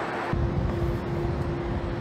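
A steady low rumble with a constant hum starts suddenly about a third of a second in and runs on unchanged.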